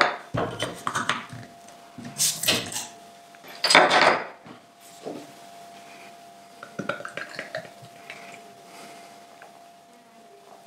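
A beer bottle's crown cap being prised off with a bottle opener, with metallic clicks and two loud noisy bursts about two and four seconds in. The beer is then poured into a glass, more quietly, from about six seconds in.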